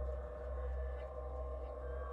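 Background ambient music: a steady low drone with held tones above it.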